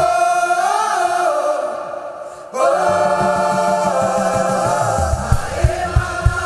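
Gospel choir singing long held chords in harmony with a live band. One phrase fades out and a new held chord comes in about two and a half seconds in, with drum hits joining near the end.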